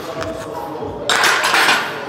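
Loaded barbell being set back into the power rack's hooks about a second in: a metallic clatter and rattle of steel bar and plates lasting under a second.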